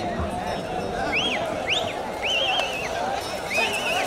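Crowd of spectators shouting at a loose bull, with about four high whistles that rise and fall, one of them warbling.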